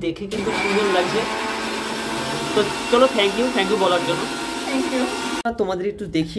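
A small electric motor running with a steady whir, starting just after the beginning and cutting off abruptly shortly before the end, with voices talking faintly under it.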